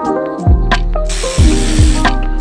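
Background music with deep bass hits. About a second in, a cordless power ratchet runs for roughly a second, a loud even whir over the music, driving a bolt on the back of a plastic truck grille.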